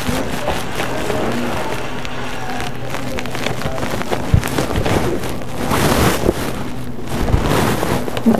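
Faint background music, with rustling and handling noise swelling now and then and a single sharp click a little past halfway.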